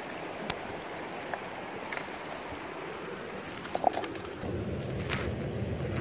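Steady rushing of a nearby river with a few faint clicks; about four and a half seconds in, a low rumble comes in under it.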